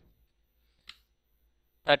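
A single computer keyboard keystroke clicks about a second in, against a near-silent background.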